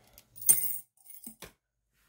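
Coins clinking: one bright jingle about half a second in, followed by a couple of faint clicks.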